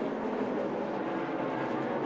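NASCAR Cup Series stock cars' V8 engines running at speed on track, a steady drone.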